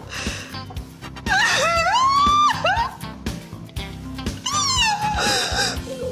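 A woman wailing in long, drawn-out cries over background music. The first cry rises and is held; the second, about two seconds later, falls away.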